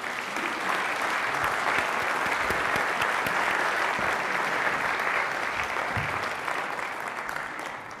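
Audience applauding, a dense steady clapping that starts right away and tapers off near the end.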